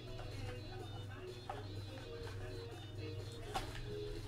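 Quiet background music over a steady low hum, with a few faint clicks as a cardboard trading-card box and its packs are handled.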